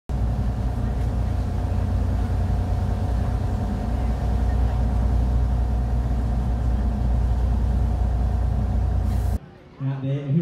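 A boat's engine running steadily, heard from inside the cabin: a loud, deep, even hum with steady tones over it, which cuts off suddenly near the end.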